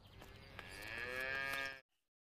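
A cow mooing: one long call that starts faint, grows louder, and is cut off suddenly near the end.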